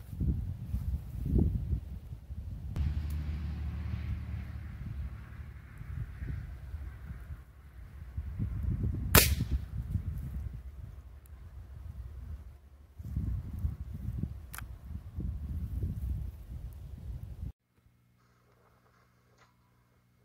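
A single sharp crack of a .22 LR rifle shot about nine seconds in, the loudest sound by far. A much fainter click follows a few seconds later.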